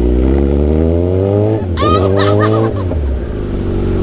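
Kawasaki Ninja 1000's inline-four engine with an Austin Racing aftermarket exhaust, accelerating hard under a full twist of the throttle. The engine note climbs, falls back sharply about one and a half seconds in, climbs again and falls back near three seconds in as the bike shifts up through the gears.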